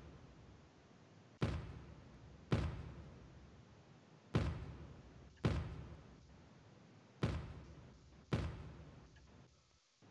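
Soloed atmospheric kick drum playing back from a mix session with Soundtoys Decapitator saturation on it. Six hits fall in pairs about a second apart, each with a long fading tail.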